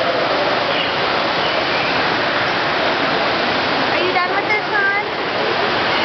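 Falling and running water from a waterfall and stream, a loud, steady rush. Around four seconds in, a brief run of high, pitch-bending calls or voices sounds over it.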